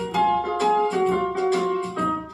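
Electronic keyboard played with both hands: a melody of separately struck notes, several a second, over a held low note.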